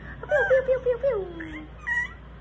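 A young baby fussing: one wobbling whimper that trails off downward, about a second and a half long, and a short high squeak near the end.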